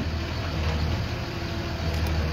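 Flatbed tow truck's engine idling steadily, a low even hum.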